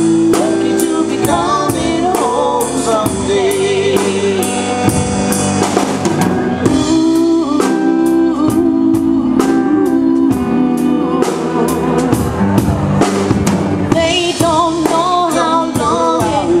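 A live band playing a pop ballad: electric guitar and a drum kit keeping a steady beat, with a wavering melody line over sustained chords.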